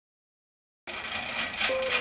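After a moment of silence, a spinning wheel whirs as it turns, with a faint regular clicking. A single held musical note comes in near the end.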